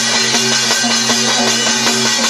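Gavri folk percussion: a brass thali plate struck with a stick and a hand drum played together in a fast, steady rhythm.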